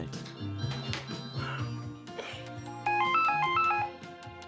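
Cordless phone ringing: a burst of about a second of quick, stepped electronic notes near the end, over soft background music.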